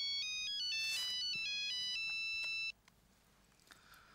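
Mobile phone ringtone for an incoming call: a short electronic melody of high beeping notes that cuts off suddenly about two and a half seconds in.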